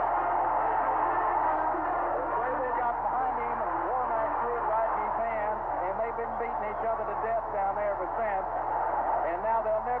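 Stadium crowd cheering loudly after a long touchdown pass, heard through an old broadcast recording, with an announcer's excited voice rising over it from a few seconds in.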